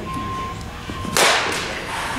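Baseball bat hitting a ball off a batting tee: one sharp crack about a second in, the loudest sound here.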